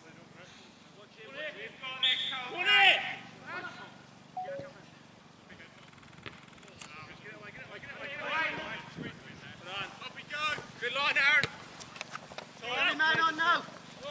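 Men's voices shouting and calling to each other during a football match, in several short bursts, the loudest about two seconds in and more near the end.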